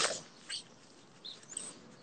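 Faint outdoor ambience with a few brief, high bird chirps scattered through it.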